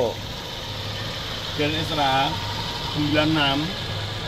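1996 Toyota Kijang Grand Extra's petrol engine idling steadily, heard from over the open engine bay.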